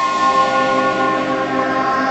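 Logo intro music of sustained, layered bell-like chiming tones with a shimmering wash, swelling in and then holding steady.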